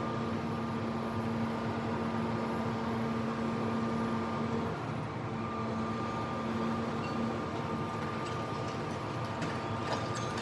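Hydraulic excavator with a demolition crusher attachment running, its engine and hydraulic pump giving a steady hum with a whine above it. The hum drops out briefly about halfway. Near the end comes a crackle of concrete breaking as the jaws crush the top of the wall.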